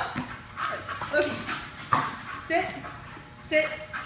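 Miniature bull terrier whimpering in short high whines, about one a second, with a few sharp clicks between them.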